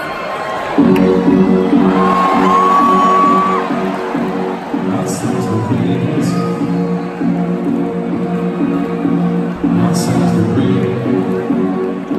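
Live band starting a song with steady, held chords that come in about a second in, with the audience whooping and cheering over it.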